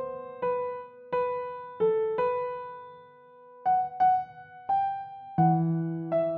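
A piano playing a slow, simple melody in single notes, each struck note ringing and fading before the next. A lower note joins near the end.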